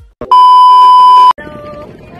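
Test-tone beep of a TV colour-bars transition effect: one steady, loud, high-pitched tone held for about a second, which cuts off suddenly. A short click comes just before it, and quieter outdoor background sound follows.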